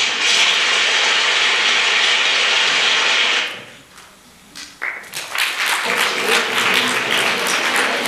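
A loud, steady hiss cuts off about three and a half seconds in. About five seconds in, an audience starts applauding and keeps on.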